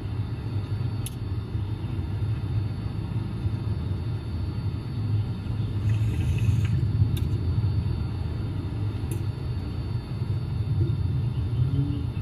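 Steady low rumble, with a few faint short clicks.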